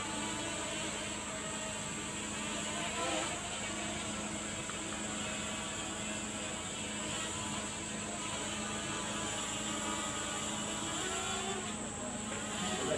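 DJI Mini 2 quadcopter drone hovering overhead, its propellers giving a steady whine whose pitch stays constant.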